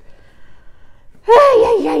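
A short quiet pause, then, a little over a second in, a woman's loud, drawn-out exclamation of "yeah".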